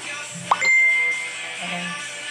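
An electronic ding over background music. About half a second in there is a sharp click and a quick rising chirp, then a single high tone held steady for about a second.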